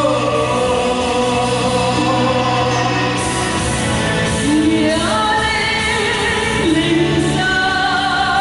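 Music from a Vietnamese stage musical number: a group of voices sings long, held notes over instrumental accompaniment, with one upward slide in pitch about five seconds in.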